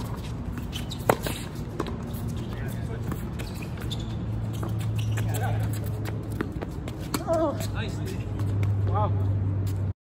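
Tennis balls struck by rackets during a doubles rally: several sharp pops, the loudest about a second in and another about seven seconds in. Short voiced calls come in the second half, ending in a "Wow", over a steady low hum.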